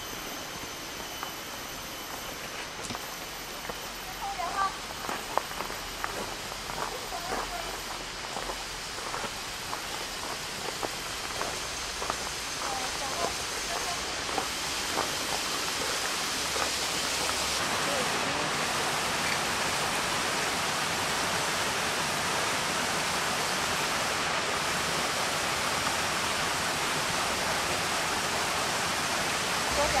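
Rushing water from a small waterfall, a steady hiss that grows louder over the first half and then holds steady.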